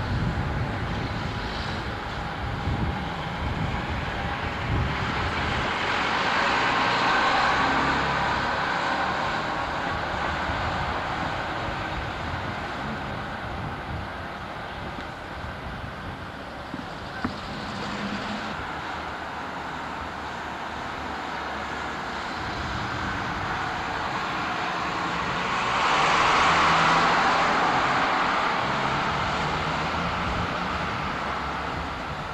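Street traffic, with vehicles passing close by and two louder swells about seven and twenty-seven seconds in, as a single-deck bus and then a car go past.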